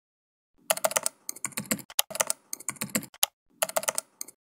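Computer keyboard typing: quick runs of key clicks in several bursts with short pauses between them, starting about half a second in.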